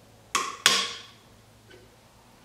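Two sharp metallic clicks about a third of a second apart, each with a short ring; the second is the louder. They come from a steel snap-ring-type tool working at the bearing cap of a U-joint cross.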